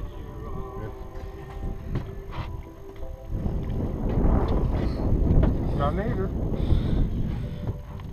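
Wind rumbling on the microphone, growing stronger after about three seconds, under a faint steady hum. A short voice cry about six seconds in.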